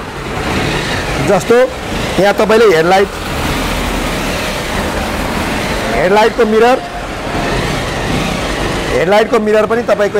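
Road traffic noise: a steady wash of passing vehicles, with a heavier low rumble from a vehicle going by in the middle. A man's voice breaks in briefly a few times.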